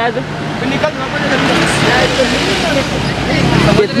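Road traffic noise from a vehicle passing on the road, swelling through the middle, with people's voices talking over it.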